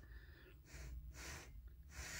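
Near silence: room tone, with two faint, soft breaths close to the microphone.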